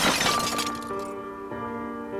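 A sudden loud crash whose noise dies away over the first half second, over music with steady held notes.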